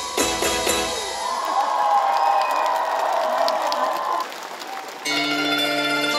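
The live trot band plays the end of a song, closing on a long held note while the crowd applauds. About five seconds in, the next song's instrumental intro starts with steady sustained chords.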